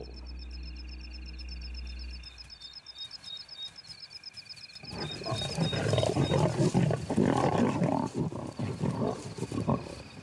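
Lions growling over a fresh kill, loud and rough, starting about halfway through. Before it, a rapid, even high chirping and a low hum.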